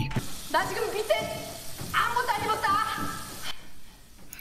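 A voice from the episode's soundtrack, speaking in short pitched phrases over a steady hiss. The hiss cuts off suddenly about three and a half seconds in.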